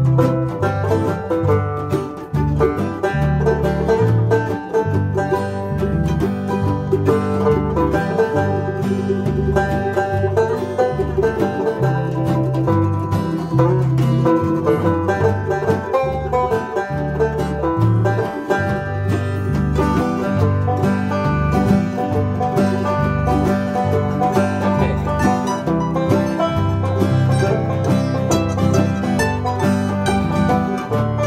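A banjo, a mandolin and an acoustic guitar playing a bluegrass tune together, with a steady stream of quick plucked notes over a regular bass line.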